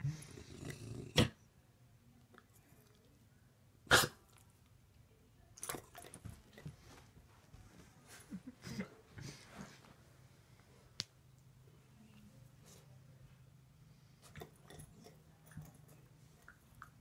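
A dog handling a dried cow's-tail chew: two sharp knocks about a second and four seconds in, then scattered small clicks and snuffles. A faint low hum runs through the second half.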